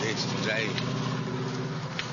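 A car engine running nearby, with voices talking over it.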